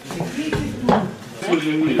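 Two short, sharp metallic clinks or knocks, about half a second apart, among men's voices.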